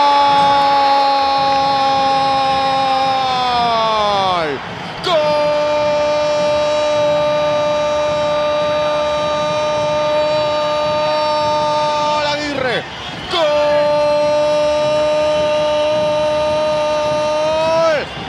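A sportscaster's long, drawn-out 'gol' cry, held on one high note. Each breath ends with the pitch sagging, and it breaks off twice for a breath, about 4.5 s and about 13 s in, then picks up the same note again.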